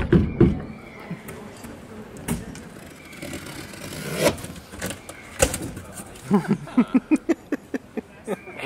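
Cardboard bicycle box being handled and worked on to make a cajon: a few sharp knocks and scrapes against the cardboard over street background noise.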